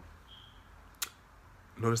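A quiet pause in room tone broken by one short sharp click about halfway through, then a man's voice starts speaking near the end.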